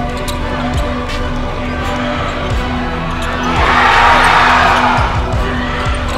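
A basketball being dribbled on a hardwood court, with gym crowd noise swelling about halfway through, under background music.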